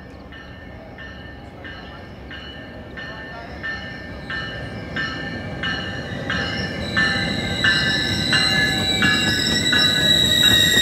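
Metrolink train led by an F59PHR diesel locomotive approaching and passing, its rumble growing steadily louder, while a bell rings steadily about every two-thirds of a second. From about seven seconds in, a steady high wheel squeal joins as the cars roll by.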